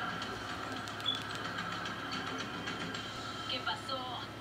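Television audio from a sitcom's end credits, playing through the TV's speakers and picked up in the room: voices over a steady background.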